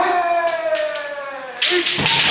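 Kendo kiai: long drawn-out shouts from several practitioners, overlapping and held, sliding slowly down in pitch. A sharp knock comes about three-quarters of a second in, and another knock with a new loud shout near the end.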